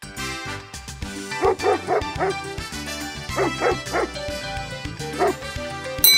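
A dog barking in short runs: about four barks a second and a half in, four more around three and a half seconds, and a single bark near the end, over background music.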